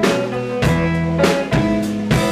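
Live blues band playing an instrumental passage on electric guitar, electric bass and drum kit, with a drum hit about every 0.6 seconds under held guitar and bass notes.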